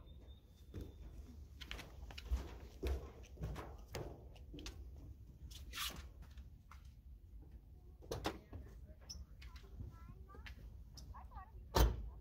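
Scattered light knocks and clicks over a low outdoor rumble, then one sharp bang near the end as a pickup truck door is shut.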